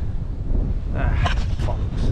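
Wind buffeting the microphone, a loud low rumble throughout. In the second half a man's voice comes briefly through it.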